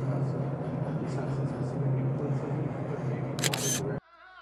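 Camera shutter firing in a quick run of several clicks near the end, over a steady low hum and room murmur.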